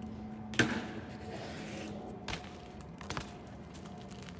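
BMX bike hitting a waxed concrete ledge with a sharp clack about half a second in, then scraping along it for over a second. A knock follows as it drops back to the ground, then a few clicks as it rolls away.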